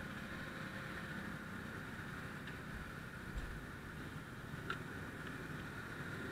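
Steady background traffic noise from vehicles waiting at the intersection, with a few faint clicks and a soft knock.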